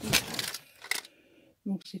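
A plastic compartment storage box handled and opened, the small metal scrapbooking embellishments inside rattling and clinking, with a sharp click about a second in.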